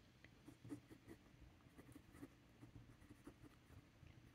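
Faint scratching of a TWSBI Go fountain pen's medium steel nib on paper as a short heading is written by hand, in small irregular strokes.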